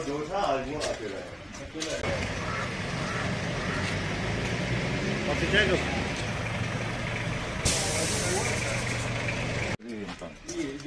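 Engine of a heavy CRPF armoured vehicle running with a steady low drone. A loud high air hiss joins it near the end, and both cut off suddenly.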